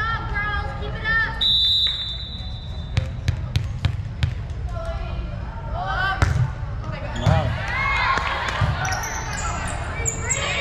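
A volleyball is bounced on the hardwood gym floor a few times before a serve, and a referee's whistle blows once, held for about a second and a half. Near the end the serve is struck and rubber sneaker soles squeak on the hardwood among players' voices, all with the echo of a large gym.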